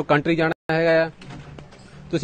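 A man's voice with drawn-out, held syllables, broken by a brief total audio dropout about half a second in, then a quieter stretch of faint background.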